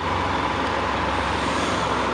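Steady running noise of heavy trucks: a low hum under an even hiss, holding level throughout.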